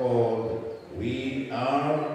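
A man's voice amplified through a microphone, speaking in long drawn-out syllables with a chant-like rise and fall, in the manner of fervent prayer.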